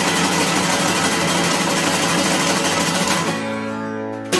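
Acoustic guitar strummed fast and hard in a dense run of strokes, which stops near the end on a chord left ringing.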